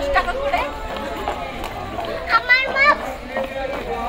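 Indistinct voices of a few people talking as they walk, with a higher voice calling out briefly in the second half.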